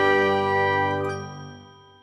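The last held chord of a short music jingle, chime-like tones ringing on together and fading away over the second half.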